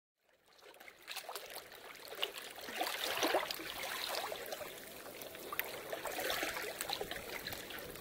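Water trickling, an irregular crackly splashing that fades in over the first second or two and then runs on unevenly.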